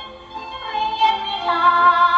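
A woman singing a Thai song in waltz time, with musical accompaniment. She holds one sung note, then a new, louder phrase comes in about one and a half seconds in.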